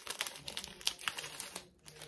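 Packaging crinkling as it is torn open by hand: a quick run of crackles that stops shortly before the end.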